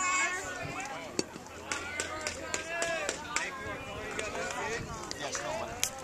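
Several voices talking and calling over one another, the chatter of spectators and players around a youth baseball field, with a couple of brief sharp clicks.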